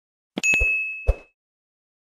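Notification-bell 'ding' sound effect: a click, then a single bright chime that rings out and fades within about a second, with a second soft click just after a second in.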